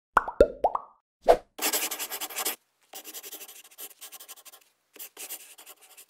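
Intro sound effects: about five quick pops, each falling in pitch, in the first second and a half, then a scratchy pen-scribbling sound effect in several bursts, the first one loudest.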